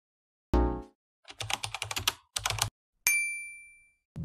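Keyboard-typing sound effect: a quick run of key clicks in two bursts, then a single bell ding that rings and fades over about a second. A short low thump opens it about half a second in.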